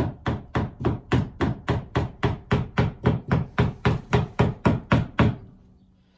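Rubber mallet tapping a stainless-steel tank on a stove's chimney pipe in quick, even blows, about four a second, stopping a little after five seconds in.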